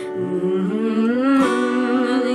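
A woman singing to her own acoustic guitar. Her voice slides upward over the first second and then holds a note, and one guitar strum comes about one and a half seconds in.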